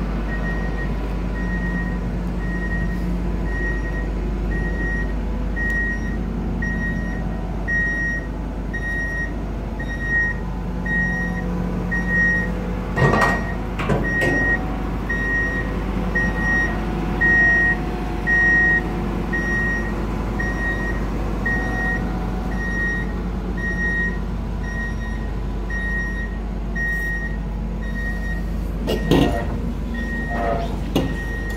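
A heavy machine's electronic warning beeper sounds steadily, about one and a half beeps a second, over a low steady rumble of machinery. A few knocks come about halfway through and again near the end.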